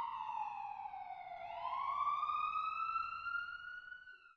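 Emergency-vehicle siren wail: one slow cycle, the pitch sliding down for about a second and a half, then climbing back up, getting quieter near the end.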